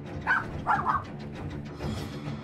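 A dog barking twice in quick succession, over background music.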